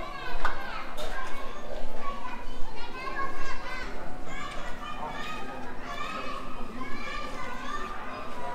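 Indistinct voices of a crowd of visitors, children among them, talking and calling out over one another. A short sharp knock about half a second in.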